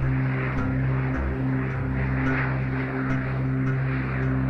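Electronic sound-art music from an interactive visual-music app: a steady low drone with a pattern of higher tones repeating over it, and faint clicks now and then.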